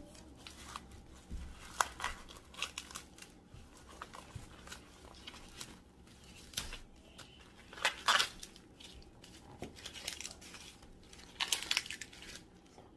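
Fresh corn husks being torn and peeled off the cob by hand: irregular crinkling and tearing rustles, with louder rips about eight seconds in and near the end.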